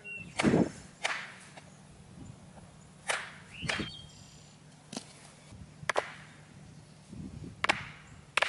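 Sledgehammer striking the top of a square wooden fence post to drive it into the ground: about seven sharp blows at uneven intervals, the first the heaviest.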